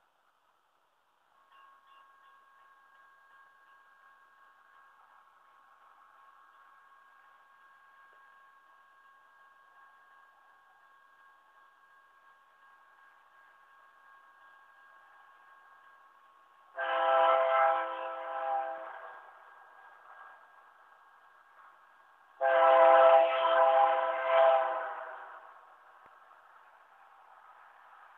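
Faint, steady ringing of the grade-crossing warning bell starts about a second and a half in. Then an approaching BNSF GE C44-9W locomotive sounds its multi-note air horn in two long blasts, the start of the crossing whistle signal, and these are by far the loudest sounds.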